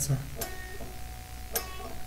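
Electric guitar played high on the neck: two picked notes, about half a second in and about a second and a half in, each left ringing.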